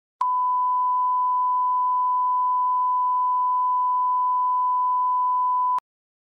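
Electronic test tone: one steady pure beep held for about five and a half seconds, starting and stopping abruptly with a click at each end.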